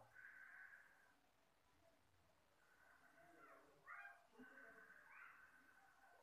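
Near silence: quiet room tone with faint, distant animal calls. A few short rising-and-falling cries come about two-thirds of the way in.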